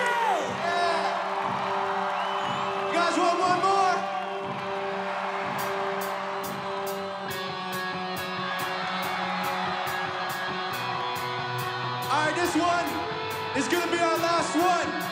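Live rock band between songs: a held keyboard drone sustained under crowd whoops and cheers from a large outdoor audience. About five and a half seconds in, a steady high ticking beat enters, around two to three ticks a second, as the next song's intro builds.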